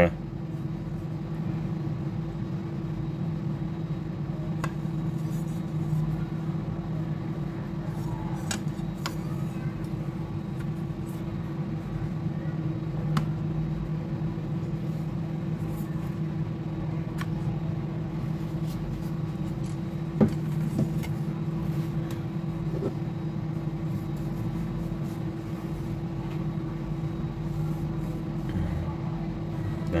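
Steady low machine hum in the background, with a few faint clicks and a tap as the plastic cover of a Bluetooth speaker is fitted and turned into its latches.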